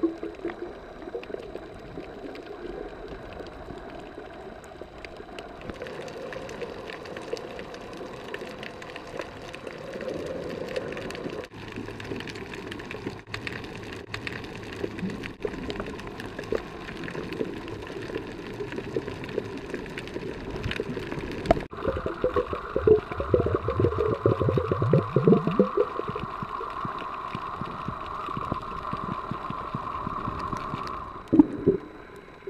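Muffled underwater sound picked up by a camera below the surface: a steady wash of water noise, with a stretch of bubbling about three-quarters of the way through. The sound changes abruptly at several points.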